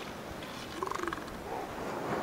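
A juvenile northern elephant seal gives a short rattling call about a second in, over steady surf, as young males spar.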